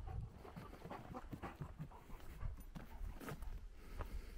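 A giant schnauzer panting close by, with short irregular scuffs of steps on a dirt trail.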